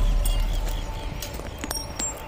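The low rumble of a large firecracker blast dying away just after it burst an old television, with a few scattered sharp ticks of debris coming down.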